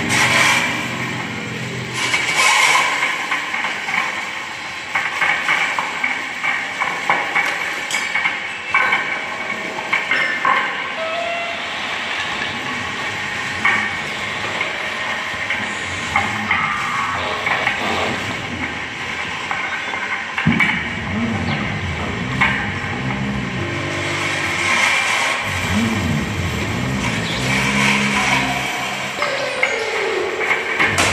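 Experimental improvised music played on homemade instruments: dense scraping and clattering noise with many small knocks and a steady high metallic ringing. About two-thirds in, a low wavering drone enters and carries on to the end.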